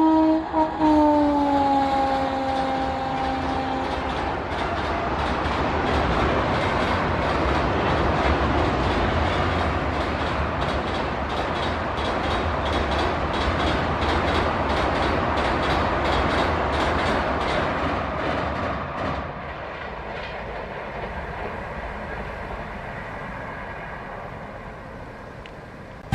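Electric locomotive horn sounding as the train passes, its pitch dropping, held until about four seconds in. Then the steady rush and rapid clickety-clack of an express train's coaches crossing a steel girder bridge, fading over the last several seconds.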